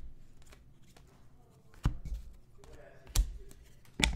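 Thick chrome-finish trading cards being handled and flicked onto a stack, with two sharp snaps about two and three seconds in.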